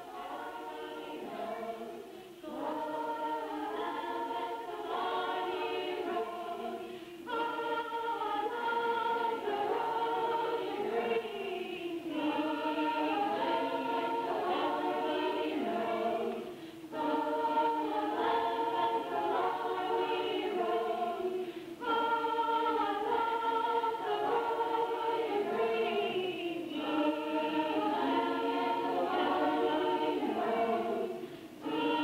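A group of voices singing a song together in chorus, in phrases broken by short pauses for breath every four to five seconds.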